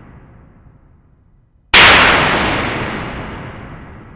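A boom sound effect: a sudden loud blast a little before halfway that dies away slowly over the next two seconds. It follows the fading tail of an earlier, similar hit.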